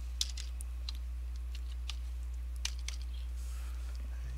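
A handful of short, irregular clicks from computer controls (mouse buttons or keys) over a steady low hum.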